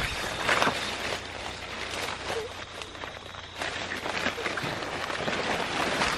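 Dry leaves and undergrowth rustling steadily as someone pushes through them on foot.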